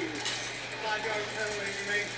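Soft, indistinct voices in a room, over a steady low hum.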